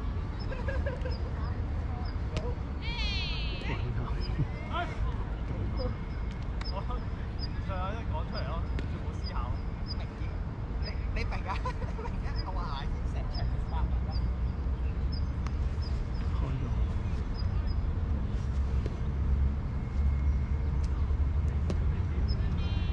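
Ballfield ambience: scattered distant voices of players calling out over a constant low rumble. A high chirp repeats about once or twice a second from about six seconds in.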